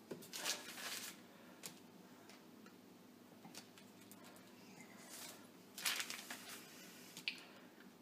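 Kitchen knife slicing through a sheet of puff pastry on the counter: faint short scraping strokes about half a second in and again around six seconds in, with a few small clicks between.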